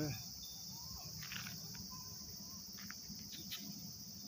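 Steady, high-pitched chorus of insects, crickets, on a summer evening.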